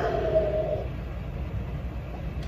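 A brief muffled vocal sound made into fists pressed against the mouth, fading within the first second, over a steady low rumble.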